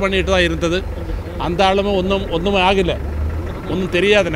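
A man speaking at length, with a steady low rumble underneath.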